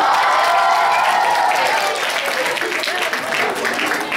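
Audience applauding, with voices over the clapping at first; the clapping thins to scattered claps in the second half.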